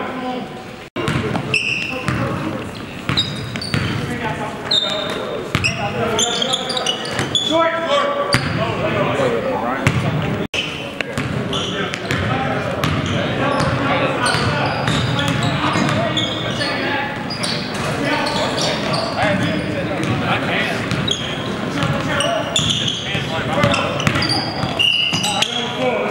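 Basketball game in a large, echoing gym: a ball dribbling on hardwood, sneakers squeaking and players calling out to each other. The sound briefly cuts out twice, at edit points.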